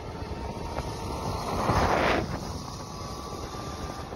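Wind buffeting a moving microphone over road and tyre noise, swelling to a louder rush about two seconds in.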